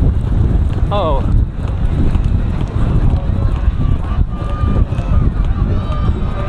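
A horse galloping on turf, its hoofbeats under heavy wind buffeting on a helmet-mounted microphone. A voice calls out briefly with a falling pitch about a second in, and a voice carries on through the second half.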